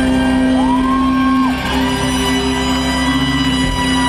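Live ska band with trumpet and saxophone over guitars and drums, holding a sustained chord. About half a second in, a high note slides up and holds for about a second.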